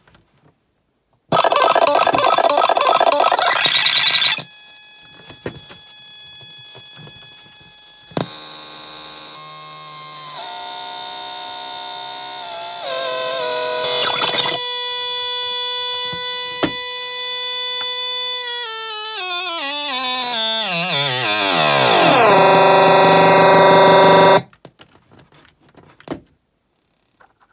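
Circuit-bent Mix me DJ machine playing electronic beats and tones with pitch-bend mods: a loud, dense burst for about three seconds, then quieter held tones that step in pitch, then a long downward pitch slide. The sound then cuts off suddenly, the time-limited playback of the machine's demo mode.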